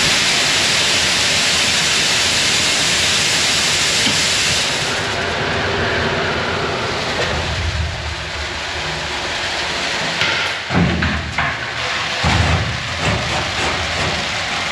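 Dry peas pouring from a hopper onto the steel sheets of a home-built pea cleaner, a loud hiss of seed on metal over the steady rush of the cleaner's fan. The pour eases after about five seconds, leaving the fan running, and a few thumps follow near the end.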